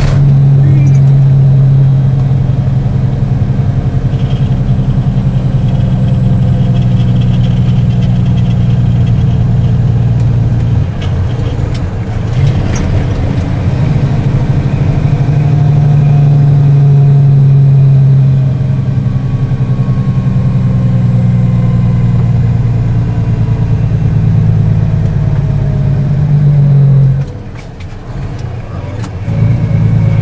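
Vehicle engine and road noise heard from inside the cab at highway speed, a steady low drone. It drops off briefly near the end as the vehicle slows.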